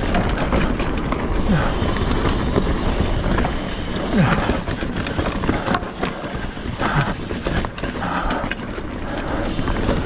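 Trek Fuel EX 7 full-suspension mountain bike riding a dirt forest trail: steady wind rush on the handlebar camera's microphone and tyre rumble, with frequent knocks and rattles as the bike rolls over rocks and roots.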